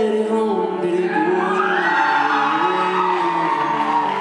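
Piano playing slow sustained chords in a large hall, with a high, held, bending voice over it from about a second in: whoops from the audience or a sung line.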